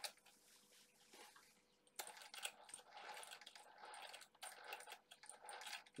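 Near silence, then from about two seconds in faint scattered clicks and light rattles of a radio-controlled car chassis being handled and turned over.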